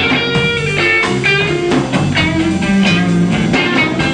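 Blues band playing live: a guitar carries sustained, bending lead notes over a steady drum beat and bass.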